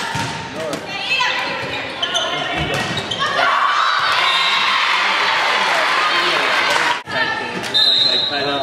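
Volleyball rally in a gym: the ball smacking off hands and the hardwood floor amid players' calls, then a loud burst of cheering and shouting from the crowd and players for several seconds after about three and a half seconds in. A short, high whistle sounds near the end, the referee's whistle ending the point.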